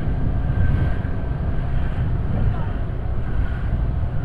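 Motorcycle engine running steadily at riding speed, with wind rumbling on the microphone.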